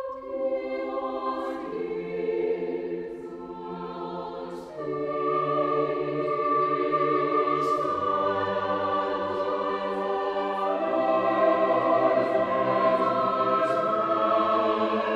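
Mixed choir singing in sustained chords, the voice parts entering one after another from the highest down to the basses. The sound gradually grows louder and fuller.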